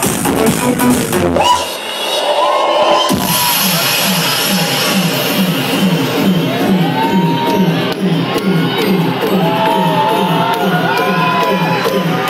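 Trance music played loud over a nightclub sound system, with a crowd cheering. About one and a half seconds in, the kick drum and bass drop out into a breakdown, and a steady pulsing synth pattern carries on.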